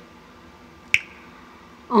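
A short pause in a woman's sung, chant-like vocal line, with low background hiss and a single sharp click about halfway through; her voice comes back in with a long held note at the very end.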